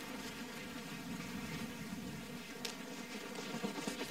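Faint steady buzzing drone under quiet outdoor ambience, with a single light click about two and a half seconds in.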